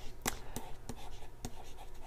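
A pen writing a word in joined-up letters on a whiteboard: faint scratching broken by several sharp taps of the tip on the board.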